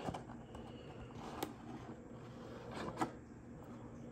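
Faint handling of a cardboard trading-card box as a card in a plastic top-loader is slid out, with a few light clicks about a second and a half in and near three seconds.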